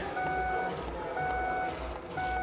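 A car's door-open warning chime beeps steadily, about one half-second beep each second, because a door has been left open.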